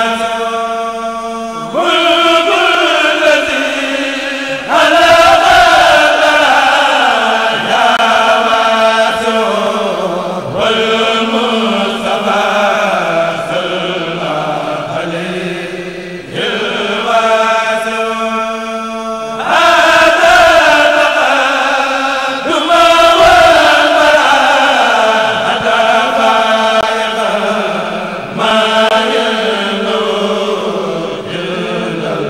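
Male Mouride kurel chanting a khassida unaccompanied, in call and response: a solo voice holds a long note, then the whole group comes in together, several times over, above a steady low held tone.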